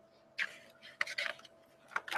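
Pages of a hardcover picture book being turned by hand: a few short, soft paper rustles and rubs.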